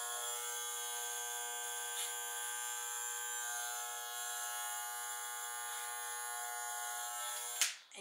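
Electric hair clippers running steadily, trimming the ends of a wig's blunt-cut bob, then switched off near the end.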